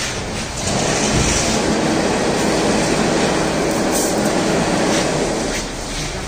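Chain-link fence weaving machine running with a steady, loud mechanical clatter and a low hum underneath.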